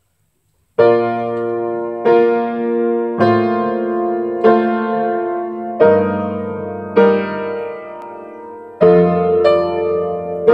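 Upright piano played solo: slow chords struck about once a second, starting about a second in, each left to ring and fade before the next.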